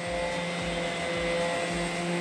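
Electric palm sander running steadily with an even whir.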